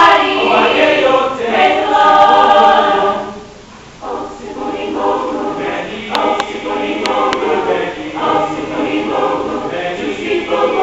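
High school mixed choir singing. The singing breaks off briefly a little over three seconds in, then comes back in more softly.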